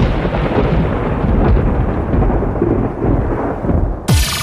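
Thunderstorm sound effect: loud rolling thunder over a rain-like hiss, with no beat or melody, cutting off suddenly at the end.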